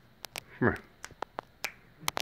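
A run of about eight sharp, irregular clicks, snap-like, made while a pony is being called over. A single drawn-out word, "come", is called about half a second in.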